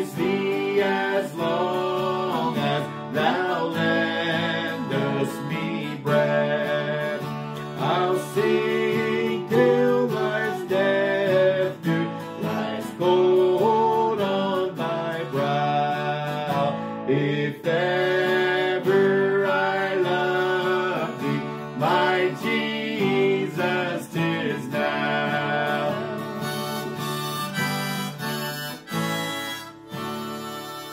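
Steel-string acoustic guitar strummed in steady chords while a harmonica in a neck rack plays the melody of a hymn tune, with a woman's voice singing along; the music stops near the end.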